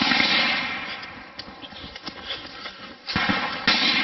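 Gunfire: a loud shot at the start whose sound dies away over about a second, a few faint distant cracks, then two more shots a little after three seconds in, about half a second apart.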